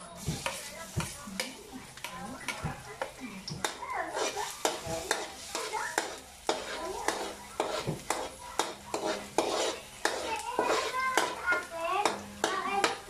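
A metal spatula scraping and tapping against a metal wok in irregular strokes as minced garlic fries in hot oil with a steady sizzle.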